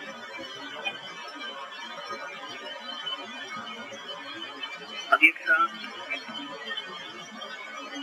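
Steady hiss and hum of a Learjet 45 cockpit voice recording between radio exchanges, with a click and a short louder sound about five seconds in.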